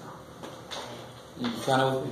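A quiet room with one faint click about two-thirds of a second in, then a man's voice asking a short question near the end.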